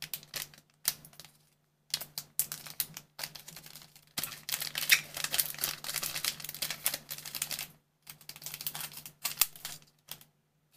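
Trading-card booster packs being opened by hand: plastic wrappers crinkling and crackling in short irregular bursts, with one long stretch of continuous crinkling in the middle.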